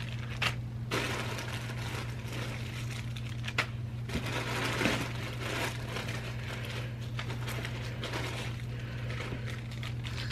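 Small plastic bags crinkling and rustling as bagged hair bows are rummaged through and handled, in irregular crackles over a steady low hum.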